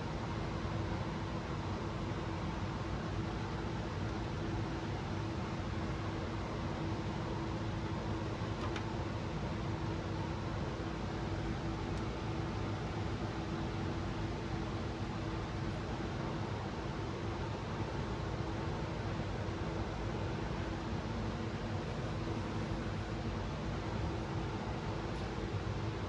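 Steady whooshing fan noise with a constant low hum underneath, unchanging throughout.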